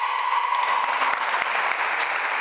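A group of young women clapping their hands together, a dense crackling patter of claps. The end of a group shout fades out about a second in.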